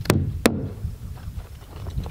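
A hammer driving a roofing nail through synthetic underlayment into a plywood roof deck: two sharp strikes less than half a second apart.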